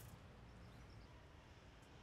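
Near silence: only a faint, steady background hiss with a little low rumble.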